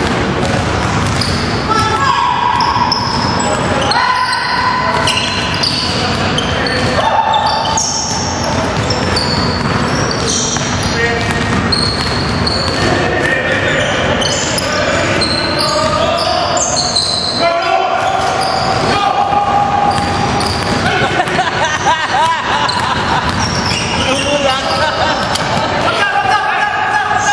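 Sounds of a basketball game in a gym: the ball bouncing on the hardwood court, short high squeaks of sneakers and players' voices calling out, echoing in the hall.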